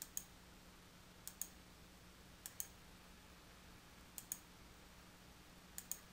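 Computer mouse button clicked five times, about once every second and a half, each a quick press-and-release pair of sharp clicks, setting Magnetic Lasso anchor points by hand. A faint steady low hum sits underneath.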